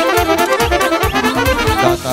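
Live Romanian folk wedding band playing a fast instrumental dance tune, with a quick, steady beat under the melody.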